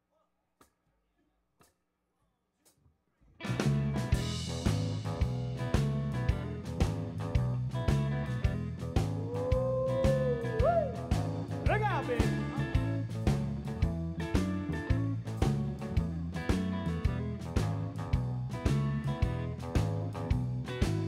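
Electric blues band kicks in suddenly after about three seconds of near silence: drums keep a steady beat under electric bass and electric guitar. Around the middle, a lead line bends upward in pitch.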